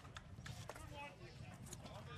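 Faint background ambience with a few soft ticks, with no clear single source.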